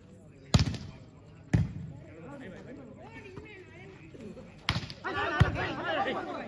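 Four sharp slaps of a volleyball being struck: two about a second apart near the start, two more close together near the end. Crowd voices murmur between them and grow louder toward the end.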